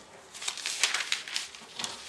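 Paper pattern sheets rustling and sliding on a table as they are handled, in irregular crisp scrapes.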